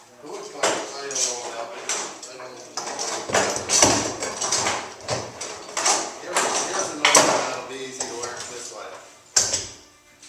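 Metal clamps and hand tools clinking and clattering in several sharp knocks while a steamed wooden rub rail is being clamped onto a boat hull, with men's voices talking indistinctly.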